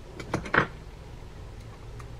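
A few light clicks from small metal reel parts being handled as the cap is seated over the handle nut of a baitcasting reel, strongest about half a second in, over a low steady hum.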